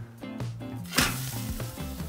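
A thick porterhouse steak laid on a very hot grill grate starts to sizzle about a second in as it begins searing over direct heat. Background music plays under it.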